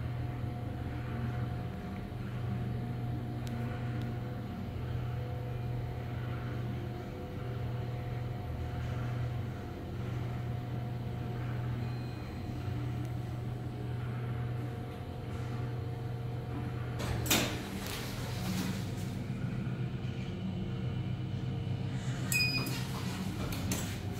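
2009 Sigma elevator car travelling down with a steady hum and faint whine. It arrives at the lobby floor with a sharp knock about two-thirds of the way in, followed by the doors sliding and a short electronic beep near the end.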